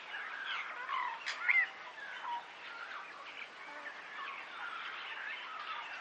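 Several wild birds chirping and calling in the background, many short whistled notes overlapping, with a louder rising-then-falling whistle about a second and a half in.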